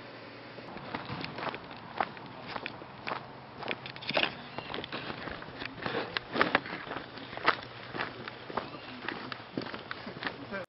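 Footsteps on a dirt hiking trail: an uneven series of steps beginning about a second in, a few of them louder than the rest.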